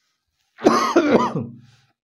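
A man clears his throat once, a short sudden voiced burst about half a second in that fades out after about a second.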